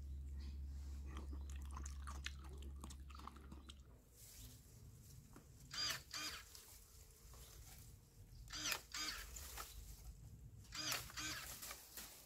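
Close-up chewing and crunching over a low hum for the first few seconds, then pruning shears snipping hedge branches: a few sharp cuts, one around the middle and a couple near the end.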